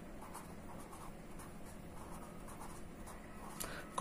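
Marker pen writing a word on paper: faint, short scratching strokes of the tip across the sheet.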